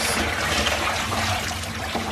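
Water from a garden hose running steadily into the bottom of a fibreglass fish tank, splashing over the tank floor as the tank fills.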